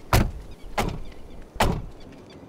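Three SUV doors slammed shut one after another, three loud thuds spread across two seconds.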